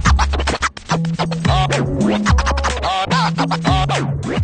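DJ scratching a sample on a DJ controller's jog wheel over a playing electronic track with a heavy bass line and drum beat; the scratches come as quick back-and-forth wobbles in pitch, in two runs in the second half.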